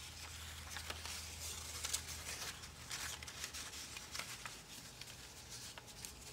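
Construction paper rustling and sliding as a paper strip is slipped behind a sheet on a table, with scattered small clicks and crinkles from the paper and fingers.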